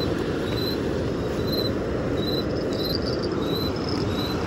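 An insect chirping in short, high, regular pulses, a little more than one a second, over a steady rushing noise.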